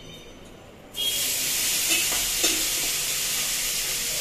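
Food sizzling steadily in a hot wok on a gas stove, starting abruptly about a second in, with a couple of light knocks of utensils.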